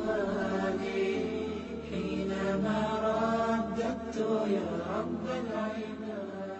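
Melodic chanted vocal with long held, gliding notes over a steady low drone.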